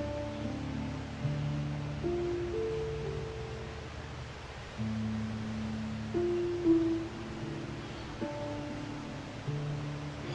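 Harp played slowly and softly: sparse, mostly low plucked notes and chords that ring on and fade, a new one every second or two.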